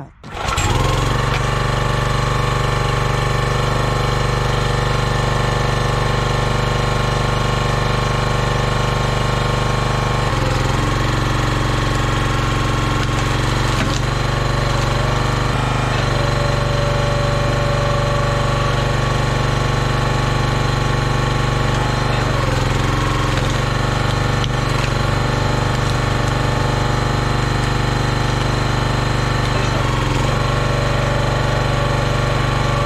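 Huskee 22-ton gas log splitter's small engine running steadily, its note shifting briefly a few times as the hydraulic ram is worked to split wood.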